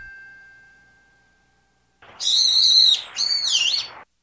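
A chime's ring fading out, then about two seconds in a brown-eared bulbul gives two shrill calls, the second dipping and rising again in pitch.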